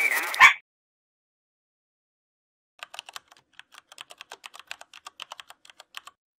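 A short laugh, then about two seconds of silence, then quick, irregular computer keyboard typing, roughly eight to ten keystrokes a second, for about the last three seconds.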